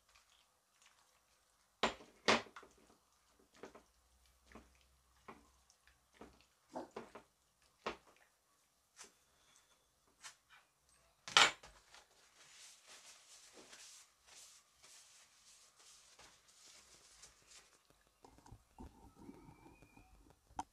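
Kitchen handling sounds from a ceramic bowl and kitchen items being moved while marinated beef is mixed by hand: a scattered series of sharp knocks and clicks, the loudest about eleven seconds in, then soft rustling.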